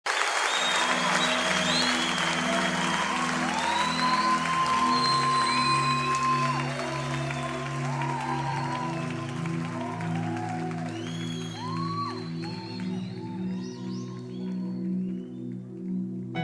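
Audience applause fading out over sustained low chords at the start of a live worship song, with scattered curving high calls from the crowd above the clapping.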